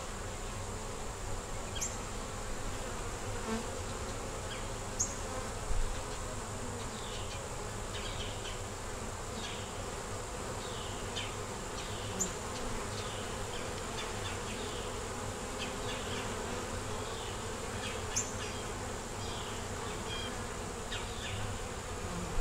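Honeybees buzzing around an open nuc hive during inspection, a steady hum.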